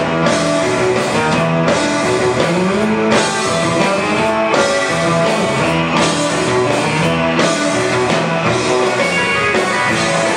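Live surf rock band: electric guitar lead over bass guitar and drum kit, playing a steady beat.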